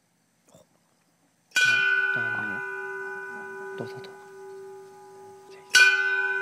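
A small hanging bell rung by pulling its cord: struck once about a second and a half in, its tone ringing on and slowly dying away, then struck again near the end. The number of strikes signals the number of the man the woman chooses.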